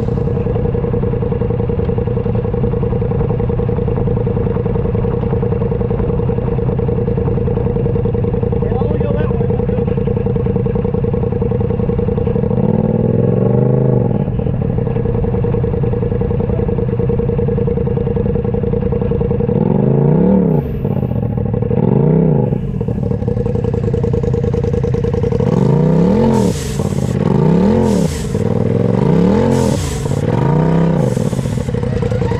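Rock bouncer buggy's engine running at steady high revs, then revved up and down in short throttle blips from about halfway through, coming faster near the end, as the buggy works its way over rocks.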